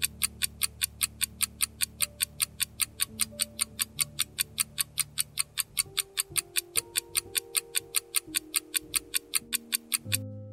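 Ticking clock sound effect marking a quiz countdown, about four ticks a second, over soft sustained background music.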